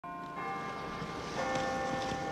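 Church bells ringing: three strikes, each tone ringing on and overlapping the next.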